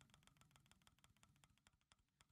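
Very faint ticking of an online mystery-box spinner reel as items scroll past. The ticks slow from about seven a second to about four a second as the reel winds down toward its stop.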